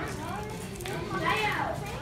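Indistinct chatter of children's and adults' voices, with one high-pitched child's voice rising and falling about halfway through.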